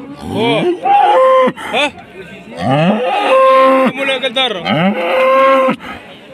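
Black-and-white Holstein-type cattle mooing loudly: three long moos, each swooping in pitch and then holding steady.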